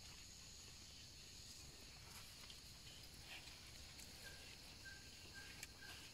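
Near silence: faint outdoor ambience with a steady high-pitched hiss and a few soft rustles. A faint short high note sounds three times in the second half.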